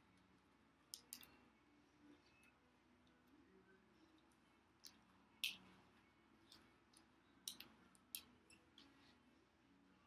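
Faint snaps and rustles of a disposable rubber glove being pulled onto a hand: a scatter of short, sharp clicks, the loudest about halfway through, over near silence.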